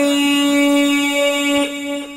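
A singing voice in a Pashto tarana holds one long, steady note that fades out near the end.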